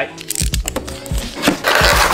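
Background music over the handling of a cardboard figure box being opened: a few sharp cracks about half a second in and a rustle near the end.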